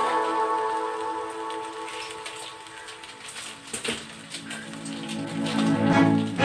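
Ground pork crackling as it sizzles in a little liquid in a stainless steel pan. Background music fades out over the first few seconds and swells again near the end.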